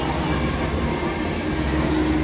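Steady background din of a busy indoor exhibition hall, with a continuous low rumbling hum beneath it and no clear voices.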